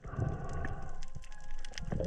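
Water sloshing and knocking against an action camera's waterproof housing while a spearfisher swims with a speargun, heard as a low muffled rumble dotted with small clicks.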